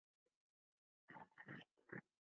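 A dog barking faintly, three short barks close together near the end.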